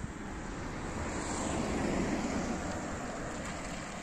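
Road traffic: a vehicle passing on the road, its sound swelling to a peak about two seconds in and then fading, with wind buffeting the microphone.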